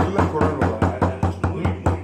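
Rapid, even hand clapping, about five claps a second, with a man's voice singing along under the claps; the clapping stops at the end.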